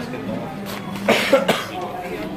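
A person coughing: a short burst of two or three quick coughs about a second in, over faint background chatter.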